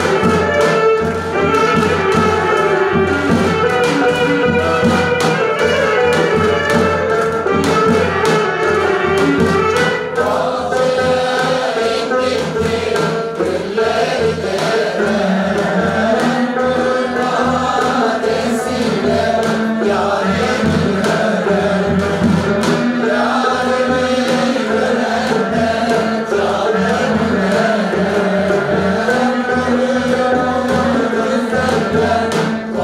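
A women's choir singing to instrumental accompaniment with a steady beat. An instrumental passage gives way to the singing about ten seconds in.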